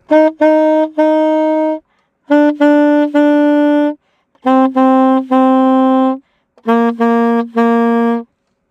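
Solo saxophone playing a syncopation practice drill: four short phrases, each of three tongued notes, a short one followed by two held longer across ties. Each phrase steps one note lower than the last, with brief gaps between.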